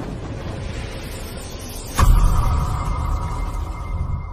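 Cinematic intro sound effects under a title card: a rumbling swell, then a sudden hit with a deep boom about halfway through, followed by a held ringing tone that fades away.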